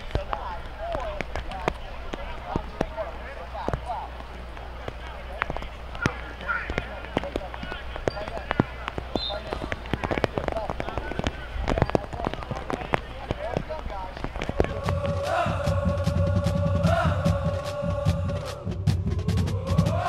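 Football practice field sounds: faint shouting voices and many sharp irregular clacks from players drilling in pads. About fifteen seconds in, closing music with held tones and a strong bass comes in and becomes the loudest sound.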